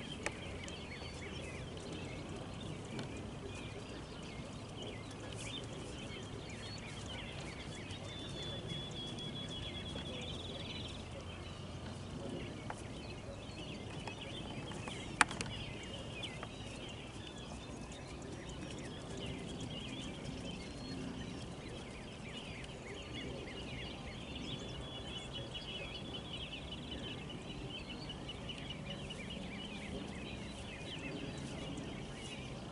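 Birds chirping and trilling in the background over a steady low outdoor rumble, with one sharp click about halfway through.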